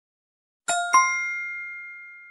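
A two-note chime sound effect, the first struck about two-thirds of a second in and the second a quarter second later, both ringing on as clear tones that fade slowly. It marks the hidden 'po' syllable being found in the grid.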